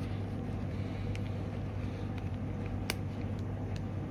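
Steady low background hum with a few faint, sharp clicks of a handheld radio being handled and pushed into its carry case.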